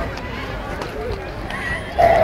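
Indistinct voices of people talking, over a steady low rumble, with a few short clicks.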